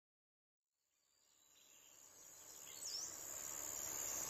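Silence for about a second, then a countryside ambience fades in: a steady high insect chirring like crickets, with a single short bird chirp a little before the end.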